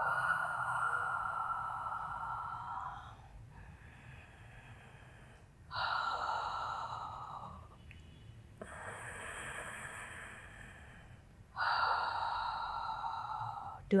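A woman's deep, close-miked breathing in time with Pilates chest lifts: three strong, long breaths about six seconds apart, with softer breaths between them.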